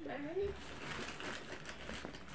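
Faint rustling and handling noise, with a short murmured vocal sound near the start.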